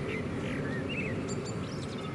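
Several short bird chirps, with a few higher, sharper notes near the end, over a low background murmur of people's voices.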